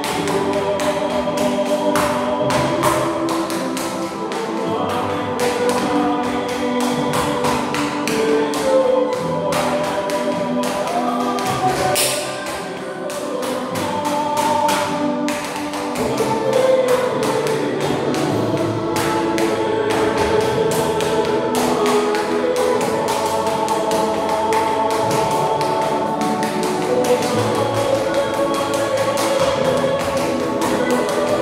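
Music with choir-like voices and held tones, with the rapid, sharp taps of hard-soled shoes striking a tiled floor in dance footwork.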